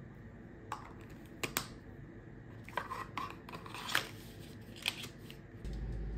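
Hands handling small plastic sunscreen containers and their packaging: irregular light clicks and crinkles. Near the end a steady low hum begins.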